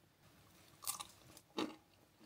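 A person biting into a cookie and chewing close to the microphone, with two short, sharp bites about a second in and again a little later.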